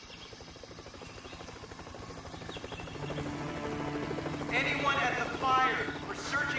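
Helicopter rotor chopping in a fast, even beat, growing steadily louder as it approaches. In the last second and a half, people shout up toward it.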